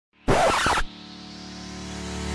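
Intro title sting: a loud, short scratchy hit about a quarter second in, then a held musical chord that slowly swells.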